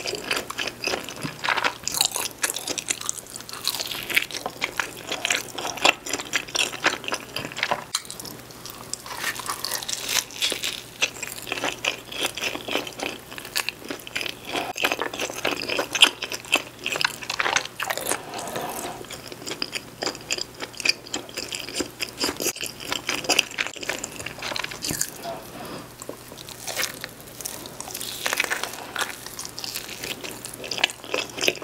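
Close-miked biting and chewing of pepperoni cheese pizza, the crust crunching in a dense run of small irregular crackles.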